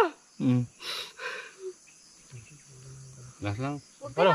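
A person's voice in short, quiet phrases and a low murmured "mm", broken by pauses.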